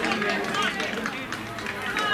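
Several overlapping voices calling and chatting across an open pitch, with no clear words.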